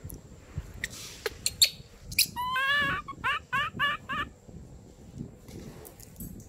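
Baby macaque crying: one long, wavering, high-pitched cry, then four short rising cries in quick succession, near the middle. A few sharp clicks come just before the cries.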